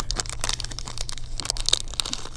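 Small plastic packet of rubber bobber stops crinkling as it is handled in the fingers: a rapid run of small crackles and clicks.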